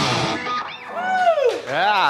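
Loud rock music breaks off, then a single sung or played note swoops down in pitch and back up, twice over.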